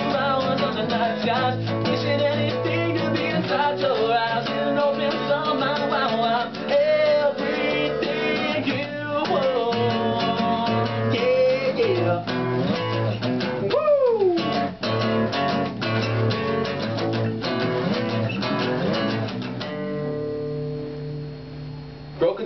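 Two acoustic guitars strumming the closing bars of a song, with wordless sung lines over them. Near the end the last chord is left to ring and dies away.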